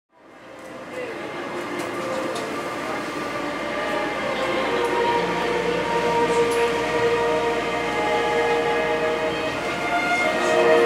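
Disney Resort Line monorail running, heard from inside the car. The sound fades in over the first second and grows gradually louder, with several steady tones running through the noise.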